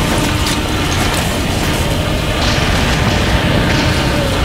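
Loud, steady rumble of destruction with dense rattling and clicking, like debris and plastic bricks clattering down.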